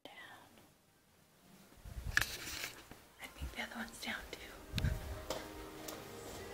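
A woman whispering quietly, starting about two seconds in, with sharp clicks among the words.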